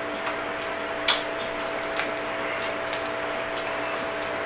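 A few soft, sharp clicks and cracks of crab-leg shell being broken and picked apart by hand, the clearest about a second in and again about two seconds in, over a steady low room hum.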